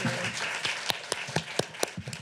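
Audience applauding, thinning out to a few separate claps in the second half.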